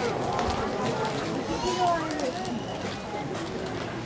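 People's voices talking and calling out among the spectators, with no bat or glove sound.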